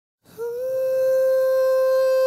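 A voice humming one long held note, starting about a quarter second in with a slight slide up into pitch.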